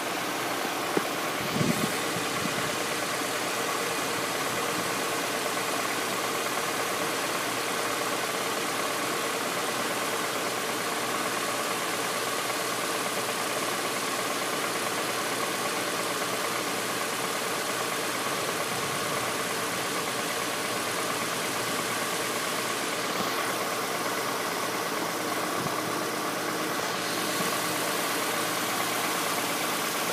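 2000 Honda Accord's 2.3-litre four-cylinder engine idling steadily, with a couple of short knocks between about one and two seconds in.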